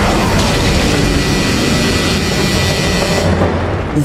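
Loud, rumbling sound effect over background music, an audio-drama effect for dragons bursting up out of the ground.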